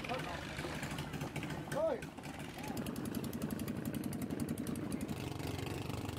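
Longtail boat engine running with a rapid, even beat. A brief voice is heard about two seconds in.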